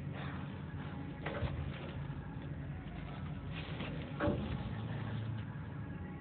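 A steady low machine hum, with a few brief scraping or knocking handling sounds inside a metal fan housing. The loudest comes about four seconds in.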